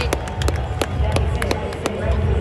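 Scattered, irregular handclaps from a few people close by, about nine in two seconds, over a steady ballpark crowd murmur.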